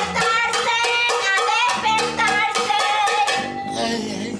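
Lively music with singing over a quick, even clatter of metal cooking pots banged together, about four strikes a second, as a noisy wake-up call. The clatter and music change near the end.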